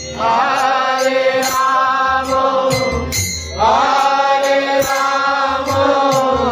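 Harmonium playing under a chanted devotional mantra, sung in two long phrases, the second beginning about three and a half seconds in. Sharp percussion strikes recur throughout.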